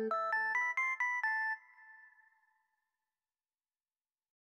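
Audjoo Helix software synthesizer playing a preset: a quick run of short pitched notes, about four a second and climbing in pitch, that stops about a second and a half in and briefly rings out.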